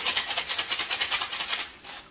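Glass baking dish lined with parchment paper being shaken quickly back and forth on a granite countertop, rattling in a fast, even run of clicks that stops shortly before the end, to settle the poured fudge flat.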